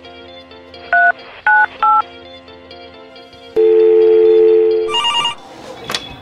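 Phone call sounds over soft background music: three short two-tone keypad beeps as a number is dialled, then a long steady ringing tone, then a brief bright electronic ring of the phone being called.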